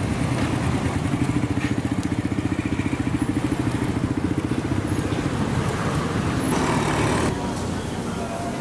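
A motor vehicle engine running close by with a rapid, even pulsing, over general street noise.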